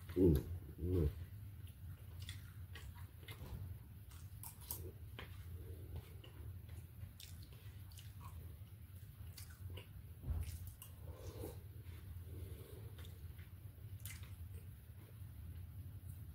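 A man chewing and biting food close to the microphone, with many small mouth clicks over a steady low hum. Two short, loud pitched sounds come in the first second, and a single thump about ten seconds in.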